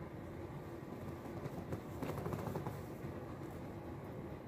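Low steady room hum, with faint rustling and a run of light clicks about halfway through as a laptop is picked up and handled.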